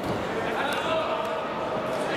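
Voices of spectators and coaches filling a large, echoing sports hall during a wrestling bout, with a few dull thuds.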